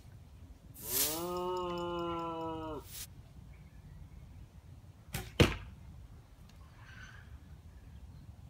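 A 45 lb Indian recurve bow shot: two sharp snaps about a third of a second apart, the second much louder, as the string is loosed and the arrow flies to the target. Before the shot, a pitched drone from an unseen source rises and holds for about two seconds.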